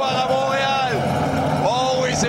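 A race commentator's voice, high-pitched and excited, over a steady background of crowd and roadside noise.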